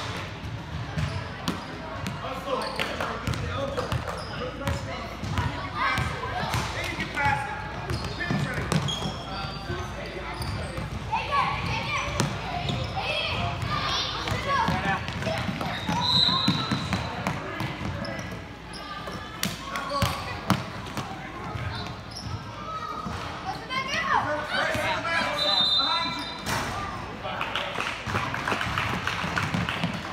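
Basketball being dribbled and bouncing on a hardwood court in a large gym, among players' footsteps and voices calling out.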